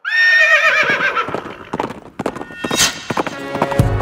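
An animal's high, wavering call that falls in pitch, followed by a quick, uneven run of clopping knocks. A deep boom comes near the end as music comes in.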